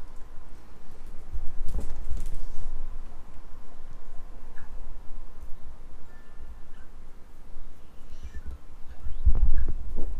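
Handling noise of a cardboard box being turned and worked open by hand against a couch: low, uneven rumbling and rubbing with scattered faint clicks, and a few heavier low thumps near the end.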